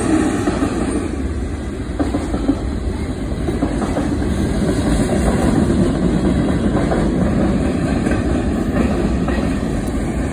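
A CSX manifest freight train's cars roll past in a steady, continuous rumble, with scattered clicks from the wheels passing over rail joints.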